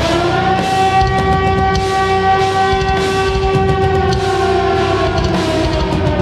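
A live heavy metal band playing, with one long held note over bass and drums. The note slides up at the start, holds steady for about five seconds and sags at the end.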